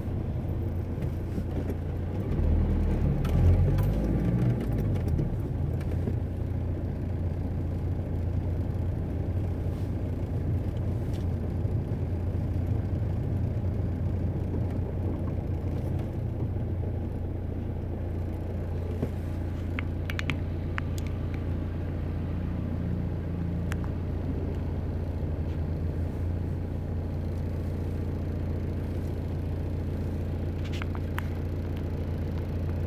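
Car engine and road noise heard from inside the cabin while driving: a steady low hum, swelling louder for a couple of seconds about three seconds in. A few short clicks come about two-thirds of the way through.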